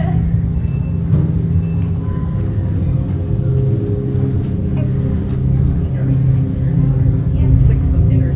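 Low, steady drone of ambient background music, with a few long held tones above it.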